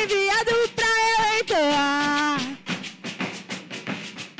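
Maracatu group: women's voices singing a toada end on a long held note about two and a half seconds in. Alfaia bass drums and a gourd shaker then carry on alone in a quick, even beat.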